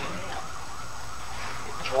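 A siren sweeping rapidly up and down in pitch, about three to four sweeps a second, over a steady low hum.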